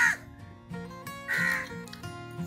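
A crow cawing twice, once right at the start and again about a second and a half later, over background music.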